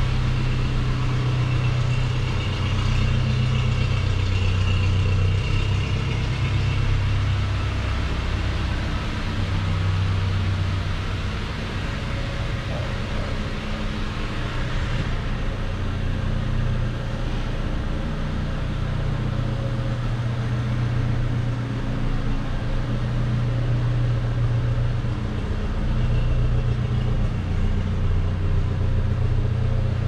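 A Toyota Land Cruiser Prado 150's 2.7-litre four-cylinder petrol engine idling steadily, a low hum that swells and fades a little.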